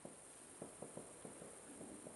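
Faint, steady high-pitched chorus of marsh insects, with a run of soft ticks through the middle.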